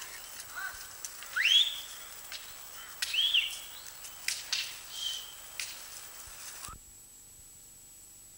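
Outdoor location sound with three short whistled calls: one rising sharply, one arching up and down, one held level, among a few scattered clicks. About seven seconds in the sound cuts to a low steady hiss.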